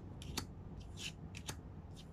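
Faint handling sounds: several short, soft clicks and light rustles from hands working at something small, over a low steady hum.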